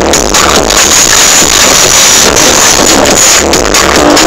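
Progressive psytrance from a live DJ set, played very loud over a stage sound system.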